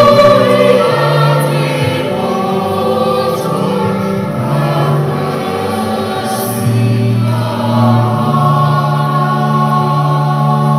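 Choir singing a slow sacred piece in long, held chords that change step by step.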